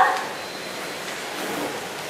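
Room tone: a steady low hiss in a pause between spoken lines, with the tail of a woman's spoken question at the very start and a faint thin high tone for about a second in the middle.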